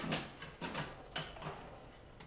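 Plastic lid of a food processor bowl being fitted and turned into place: a few light plastic clicks and knocks, with the motor not yet running.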